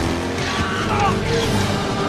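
Film action score over a motorcycle engine and a tyre skid as the bike slides sideways through snow.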